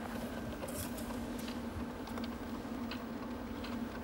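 Poker chips clicking softly and irregularly as they are handled at the table, over a steady low hum.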